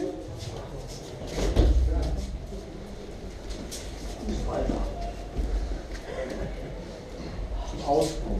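A heavy thud about a second and a half in, a body landing on a training mat during aikido throws, amid shuffling on the mat and indistinct voices in the hall.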